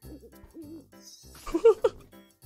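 A man's wordless excited vocalising: a wavering, hoot-like 'ooh' in the first second, then a few loud short cries near the end as he breaks into laughter.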